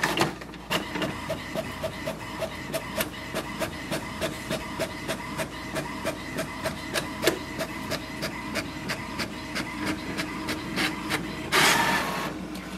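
HP Smart Tank 6001 inkjet printer printing a copy on the back of a sheet for a double-sided copy. Its mechanism clicks regularly, about four times a second, over a steady motor hum, with a louder rush as it gets going and again near the end as the printed page is fed out.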